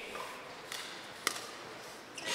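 Quiet sports-hall ambience with one sharp click about a second and a quarter in, and a fainter one just before it.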